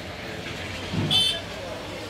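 Busy harbour background: a steady low engine hum with people talking, and a short shout about a second in.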